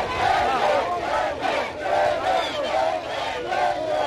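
A large crowd of many voices shouting together, loud and continuous, with repeated rising-and-falling shouts standing out above the mass.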